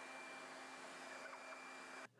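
Faint, steady hiss with a thin low hum and a faint high whine beneath it: the background noise of an old camcorder recording. It cuts off abruptly at the end.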